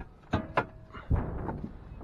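Two light clicks about a second apart as the hood release lever under the dash of a 2007 Dodge Ram 2500 is pulled to unlatch the hood.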